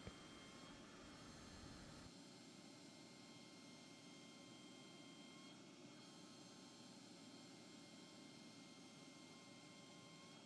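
Near silence: a faint steady hiss with a few faint, thin high tones. The low end drops out about two seconds in.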